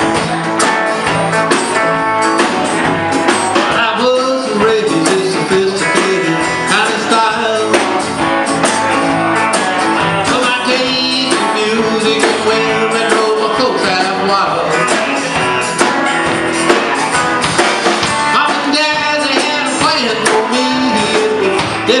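Live country-rock band playing a song on guitars and drum kit, with a sung line starting at the very end.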